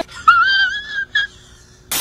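A man's high-pitched, strained vocal sound, drawn out for nearly a second and rising slightly, followed by a second short squeak. Near the end a burst of static hiss cuts in.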